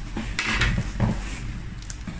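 Brief handling noises: a few short rustles and light knocks from a plastic zip bag and a stainless steel bowl being handled on a table, about half a second and a second in, with a small click near the end.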